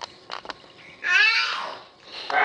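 A baby's growling vocalization: one loud, rough cry about halfway through that slides down in pitch. A few faint clicks come before it.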